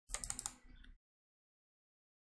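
A quick run of computer keyboard clicks, about half a dozen in half a second, fading out by the end of the first second.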